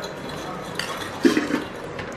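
Food being served by hand: a spoon laying wet raita on a plastic plate and fingers picking fried chicken out of a stainless steel bowl, light scraping and clatter over a steady background hiss, with a brief louder rustle just under a second in.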